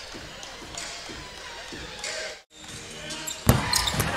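A basketball being dribbled on a hardwood gym floor over low court ambience. The sound drops out for an instant about halfway through, and a loud single bounce lands near the end.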